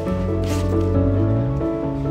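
Background music with held notes that change pitch every second or so, and a brief soft swish about half a second in.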